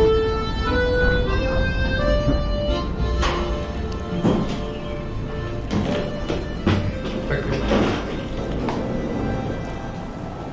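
A short melody of held notes in the first few seconds, then a string of knocks and clatters as a heavy wooden door is pulled open and a rolling suitcase is wheeled through it.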